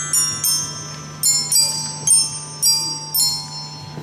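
Glockenspiels played by a group of children: a slow melody of single struck notes, each ringing on, roughly two notes a second.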